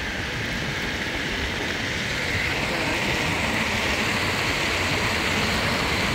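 Meepo Hurricane electric skateboard rolling fast on an asphalt path: a steady rush of wheel and wind noise that grows slowly louder.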